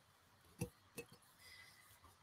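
Near silence with room tone, broken by two brief soft clicks about half a second apart, from art supplies being handled on the work table.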